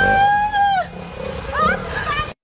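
A woman screaming: one long high cry that falls away at its end, followed by shorter rising cries about a second and a half in.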